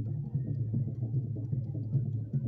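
Traditional drum-led music for a dance troupe, with a continuous pulsing beat.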